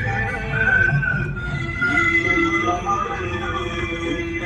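A song with a singer's voice over instrumental backing, playing on a car radio and heard from inside the car.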